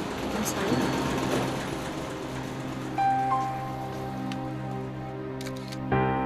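Background music score with long held notes. In the last second, a quick run of camera shutter clicks.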